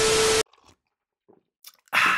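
Television static sound effect: a loud burst of hiss with a steady mid-pitched tone through it, cutting off sharply about half a second in. Near the end comes a sudden sharp gasp.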